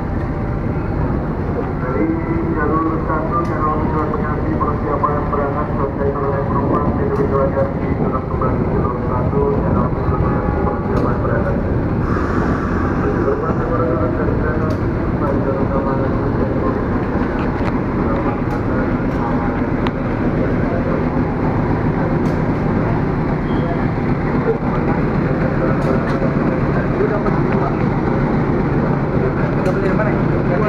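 A diesel locomotive hauling a passenger train slowly into a station, its engine running steadily as it draws up along the platform. People are talking nearby.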